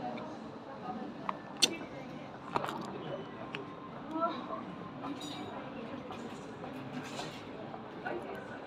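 Café ambience: a steady background murmur of distant voices, with a few light clicks and clinks.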